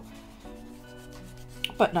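Felt-tip marker tip rubbing on journal paper as a drawn shape is coloured in, with faint background music holding steady notes under it. A word is spoken near the end.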